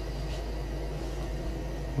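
A pot of young honey mushrooms at a rolling boil in their second boiling water, giving a steady hiss of bubbling with a low even hum underneath.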